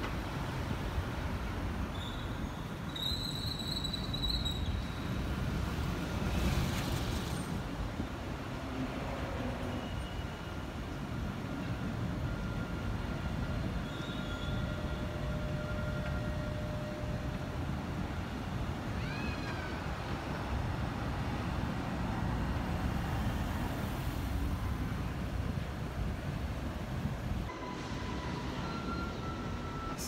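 Steady road traffic with cars passing, and a Dubai Tram running by on its rails. A high-pitched whine comes in about three seconds in, and short squealing tones come later.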